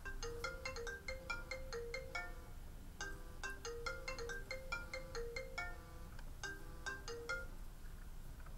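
Smartphone ringing with a melodic ringtone: a quick tune of short, bright notes played twice, then cut off partway through a third time as the call is answered.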